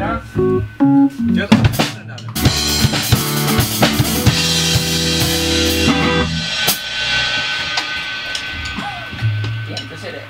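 Drum kit played in a short burst of snare and bass-drum hits, then a crash cymbal struck about two and a half seconds in. The cymbal rings out over a held chord from the band that stops about six seconds in, and the ring then fades away.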